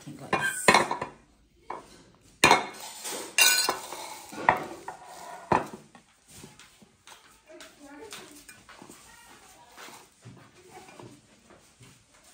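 A metal spoon or fork clinks and scrapes against glass dishes as crumbly fried food is broken up and moved into a glass bowl. There are several sharp clinks in the first half, then quieter scraping and handling.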